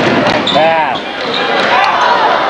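A basketball game in play: the ball bouncing on the court amid shouting voices, with a rising-and-falling yell about half a second in.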